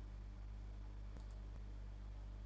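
Low steady electrical hum on the recording, with a few faint clicks a little over a second in.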